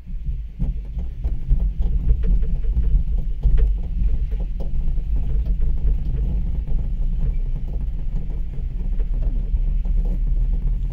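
Steady low rumble of a moving cable-lift ride, with light scattered rattles and clicks, swelling in level during the first second.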